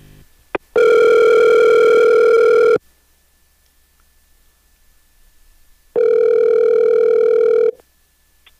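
Telephone ringback tone heard while an outgoing call is placed: two rings of about two seconds each, roughly three seconds apart, with a short click just before the first ring.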